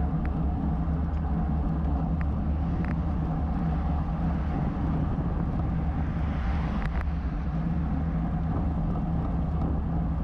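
Wind and road noise on a bike-mounted camera riding at about 22 mph: a steady low rumble with a few light clicks, one sharper click about seven seconds in.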